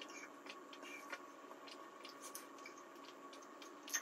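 Faint, irregular swallowing clicks as a person drinks juice from a glass in long draughts, over quiet room tone with a faint steady hum.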